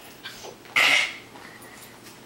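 A small dog gives one short, sharp vocal sound about a second in.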